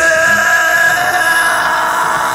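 Live heavy metal band in a break: drums and bass drop out for about two seconds, leaving a steady held high note and crowd noise, recorded from within the audience.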